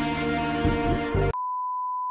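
Pop instrumental backing music cuts off suddenly about a second and a quarter in and is replaced by a steady, single-pitched test-tone beep, the reference tone that goes with TV colour bars.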